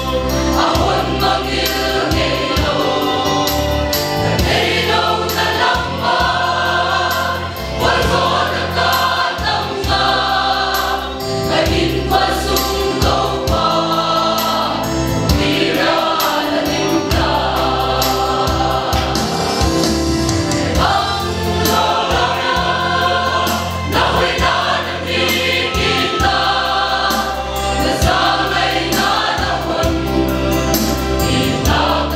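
A mixed choir of women and men singing a hymn together in sustained phrases of a few seconds each, with steady low notes underneath.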